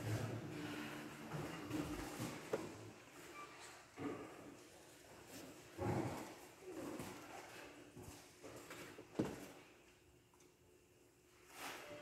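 Hushed room before a performance: scattered faint rustles, creaks and small knocks from seated listeners and players settling. About ten seconds in, the room falls to near silence.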